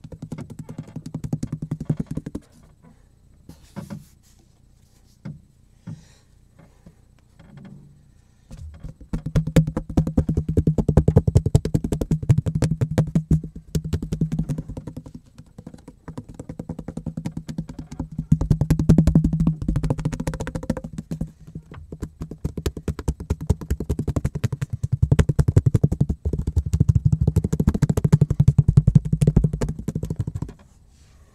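A cutting board tapped and drummed rapidly by hand: fast runs of sharp taps over a low ring from the board. The runs come in long stretches, after a quieter spell of scattered single taps early on.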